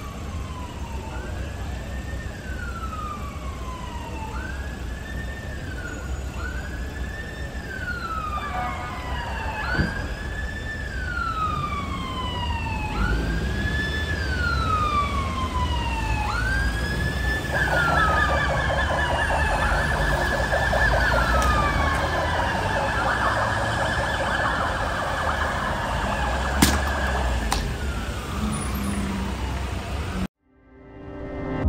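Police car siren wailing, each cycle rising quickly and falling slowly, repeating about every two and a half seconds and growing louder. About halfway through a second, rapid warbling siren tone joins it over a low traffic rumble, with a sharp knock near the end.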